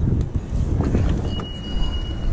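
Low, rumbling outdoor city street noise with handling noise. A thin, steady high beep starts a little past halfway and lasts about a second.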